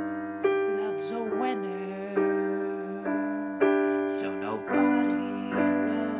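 Piano playing sustained chords, a new chord struck every second or so and left to ring and fade between strikes.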